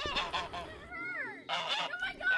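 Domestic white goose honking, about three calls in quick succession, the middle one sliding down in pitch.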